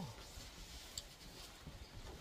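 Faint wind rumble buffeting the microphone in a strong, cold wind, with a single light click about a second in.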